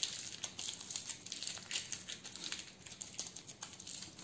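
Parchment paper crinkling in many small, irregular crackles as its ends are folded and twisted shut around a soft butter log.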